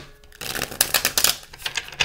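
A deck of oracle cards being shuffled by hand: a rapid run of crisp card flicks starting about half a second in and lasting over a second.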